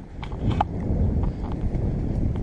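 Wind buffeting the camera's microphone: a steady low rumble that builds about a third of a second in, with a few light knocks.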